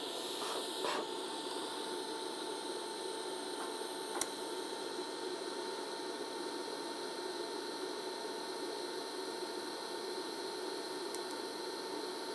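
Steady hiss of a TIG welding arc from a RazorWeld 110 inverter, scratch-started at about 85 amps on eighth-inch plate, with a faint steady high whine and a single click about four seconds in.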